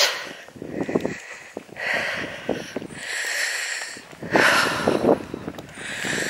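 A person breathing audibly close to the microphone, several breaths about a second apart, with faint footsteps on a paved lane.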